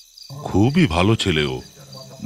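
Crickets chirping steadily behind a man's voice speaking.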